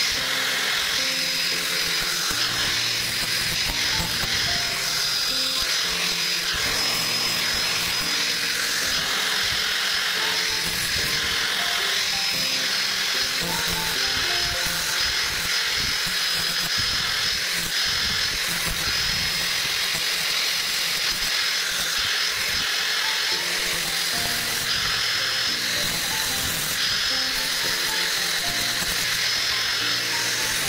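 Handheld electric angle grinder with a sanding disc running steadily, a constant high whine and hiss as it shapes carved wood, with background music playing over it.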